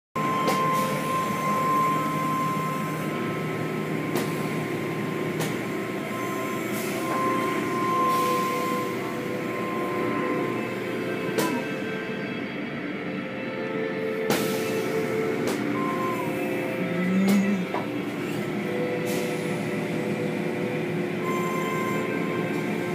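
Automatic tunnel car wash running: machinery hum and whine with held tones that shift in pitch, over a constant wash of spray and cloth curtains working on a car, with a few scattered knocks.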